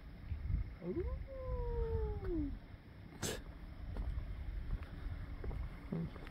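A single long, cat-like meow that rises sharply at first, then slides slowly down in pitch. A sharp click follows about three seconds in, over a low rumble.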